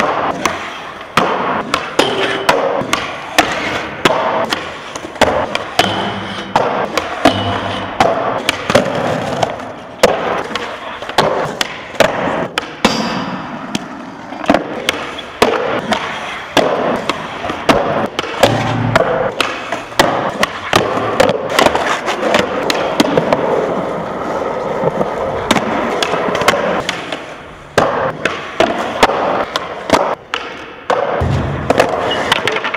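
Skateboards rolling on smooth concrete ramps, with frequent sharp pops, landings and board slaps several times a second.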